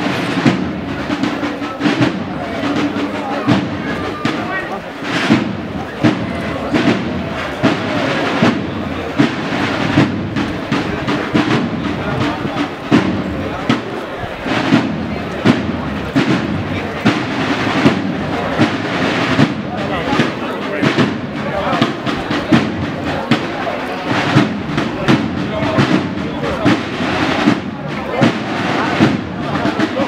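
Cornet and drum band playing a processional march, with sharp snare-drum strikes throughout, over the voices of a street crowd.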